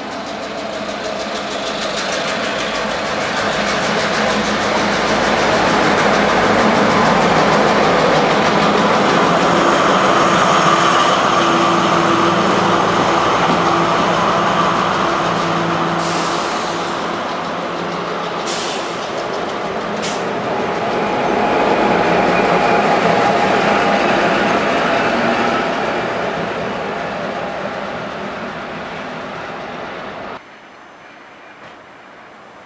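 Slow diesel-hauled work train passing close by: Metro-North GP35R and BL20GH locomotives towing a dead M7A electric railcar pair. The engine drone and wheel rumble build as the lead locomotives go by, a few short high hisses come while the towed cars pass, and a second swell comes as the trailing locomotive passes. The sound then fades as the train moves away.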